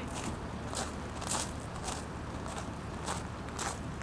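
Footsteps, about two a second, each a short sharp step, over a steady low background rumble.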